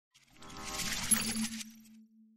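Channel intro logo sound effect: a swell of bright, noisy shimmer with a sharp hit about a second in, which dies away and leaves a single low held tone.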